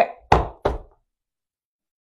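Two sharp knocks, about a third of a second apart, as a clear plastic case of thread spools is set down on a table.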